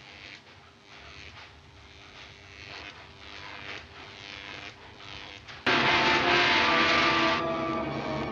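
Quiet film-soundtrack hiss, then about two-thirds of the way in a sudden loud orchestral music sting with a bright crash. The crash dies away after about a second and a half and leaves held string chords.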